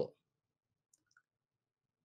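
Near silence: a pause in a man's talk, his last word trailing off at the very start, with a couple of very faint clicks about a second in.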